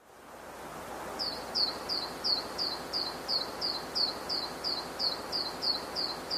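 Faint background hiss fading in, with a small animal's high chirps repeating evenly about three times a second from about a second in.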